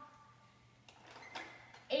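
Quiet room with two faint plastic clicks, about a second and a second and a half in, from a Nerf toy blaster being handled.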